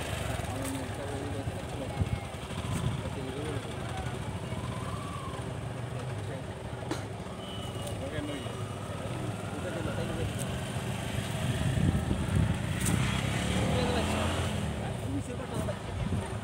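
People talking quietly and indistinctly over a steady low rumble, with a few faint clicks.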